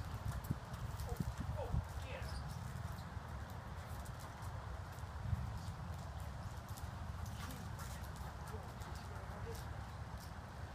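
A Great Dane's paws and claws clicking on a hard stone porch floor as it bounces and trots about, in scattered irregular steps over a steady low background rumble.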